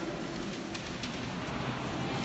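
Low, indistinct voices of a group of people in a large room, a steady murmur with no clear words.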